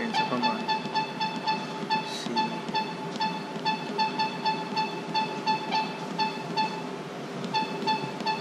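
Treadmill console beeping rapidly, about five short electronic beeps a second, as the speed-up button steps the belt speed up one increment at a time; the beeping breaks off briefly twice. A steady low hum runs underneath.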